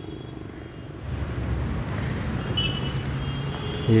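Steady low hum of a motor vehicle's engine from road traffic, growing louder about a second in and then holding steady.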